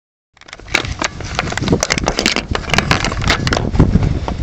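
Handling noise of a handheld camera being gripped and turned: fingers rubbing and knocking on the body by the microphone, a dense run of crackles and clicks over a low rumble.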